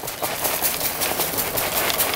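Rice Krispies cereal poured from the box into a stainless steel wok of melted marshmallow. The dry grains landing make a steady, dense patter of tiny ticks.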